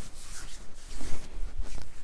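Hands rubbing and gripping along a bare forearm during a massage: irregular swishing strokes of skin on skin, with rustling of clothing, loudest about a second in.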